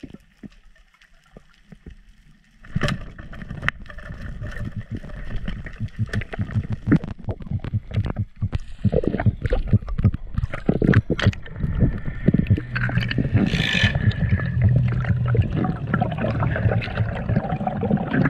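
Underwater sound picked up by a camera in its housing as a spear diver moves: after a few quiet seconds, a dense run of knocks and clicks over a muffled water rush begins, with a low steady hum joining later on.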